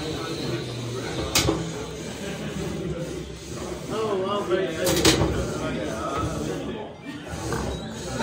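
Indistinct voices talking in the background over room noise, with two sharp knocks, one about a second and a half in and one about five seconds in.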